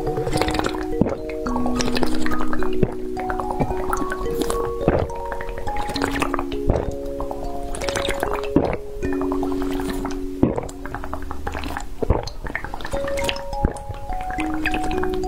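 Gulps and swallows of a drink, coming every second or two, over background music of bell-like notes.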